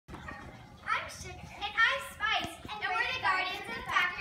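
Children's voices: high-pitched shouts and chatter with no clear words.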